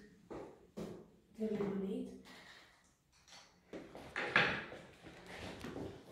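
A few light knocks and clatters of objects being handled and set down on a table, with a short stretch of indistinct speech about one and a half seconds in. The loudest clatter comes a little past four seconds.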